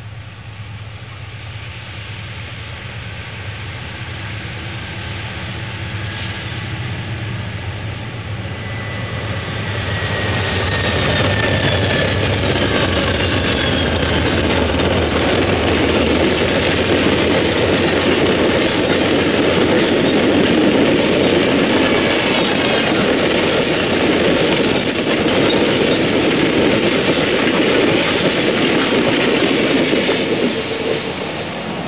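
Amtrak passenger train passing close at speed: the low rumble of the diesel locomotives grows louder as they come up and go by about ten seconds in, then a steady rush of steel wheels on rail as the double-deck Superliner cars roll past. A faint high whine slides downward as the head end passes.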